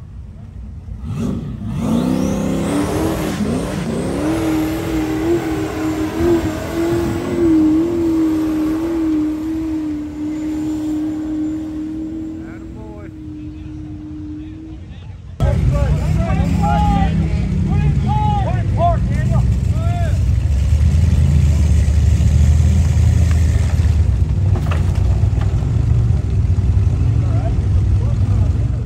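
A rock bouncer buggy's engine revving hard up a hill climb: the pitch climbs and then holds high and steady. It cuts off suddenly about halfway through and gives way to a deeper, steady low rumble with people's voices over it.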